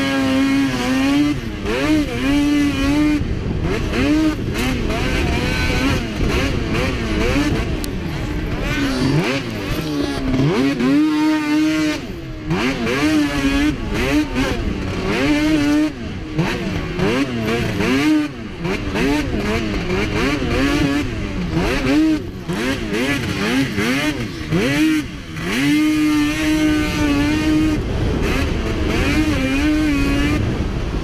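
Polaris two-stroke snocross race snowmobile engine revving hard, its pitch rising and falling again and again as the throttle is worked over the bumps and jumps. A few times it is held steady at high revs, and there are several brief dips where the throttle is let off.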